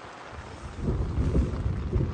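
A thunderclap rumbling in about half a second in and swelling to a loud, deep, rolling rumble, over heavy rain on the tent.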